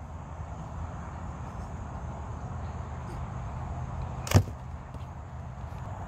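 Steady low outdoor rumble with a single sharp smack about four seconds in.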